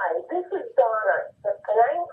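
A woman's voice speaking in a voicemail message played back through a phone's speaker.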